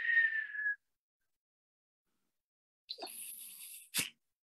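A woman imitating the sounds of shelling with her voice: a short whistle falling slightly in pitch at the start, then a hiss from about three seconds in that ends in a sharp click.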